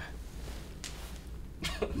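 A short cough from one of the people in the room about a second in, over low room noise, with voices starting again near the end.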